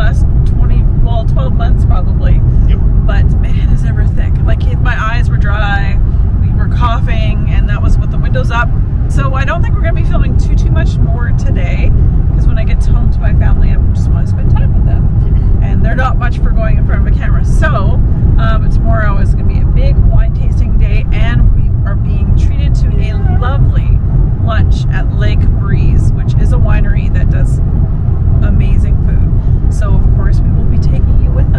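Steady low rumble of road and engine noise inside a moving car's cabin, loud on the microphone, with a woman talking over it.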